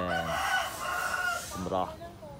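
A rooster crowing, one drawn-out call of about a second, with a woman's voice around it.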